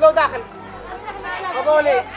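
Voices of several people talking over one another in a crowded shop, with a loud burst of speech at the start.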